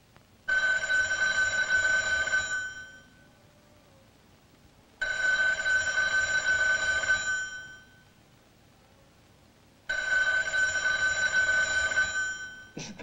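A bell ringing three times, each ring about two seconds long and fading out, starting roughly five seconds apart.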